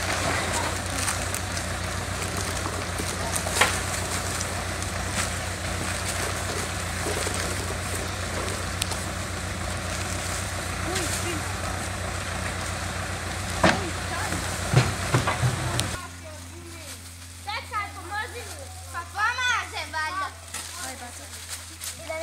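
Farm tractor engine running steadily at idle, a low drone with a couple of sharp knocks over it. It cuts off suddenly about three-quarters of the way through and gives way to children's voices over a fainter hum.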